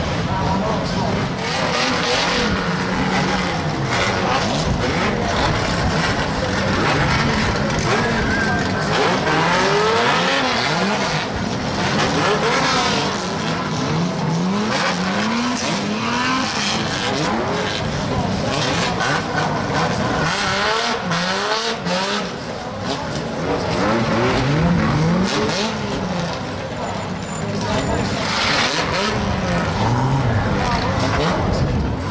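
Several banger racing cars' engines revving up and easing off again and again as they drive on a loose shale track, with short knocks and clatters among them.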